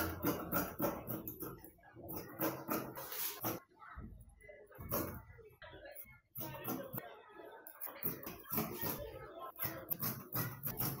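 Tailor's shears cutting through trouser fabric: a run of irregular snips and cloth noise.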